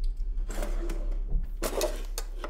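Metal cutlery clattering and rattling in a kitchen drawer as a large knife is grabbed out of it, with the sharpest clatters near the end, over a low steady hum.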